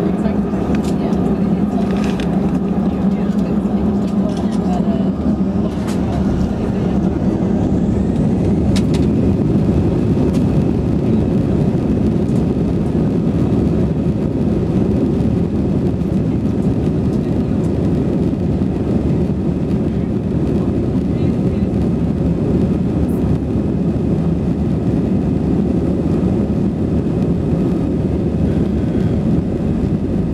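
Steady low rumble of an Airbus A320's jet engines heard from inside the cabin at a window seat, with the plane on the ground.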